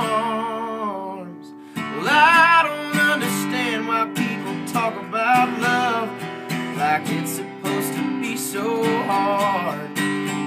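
Live country song on strummed acoustic guitar with a man singing over it. The playing thins out briefly a little over a second in, then comes back in fuller as the voice returns on a held, wavering note.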